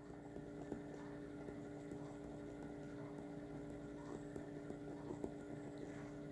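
Faint steady electrical hum, with scattered light ticks from a stylus writing on a tablet screen.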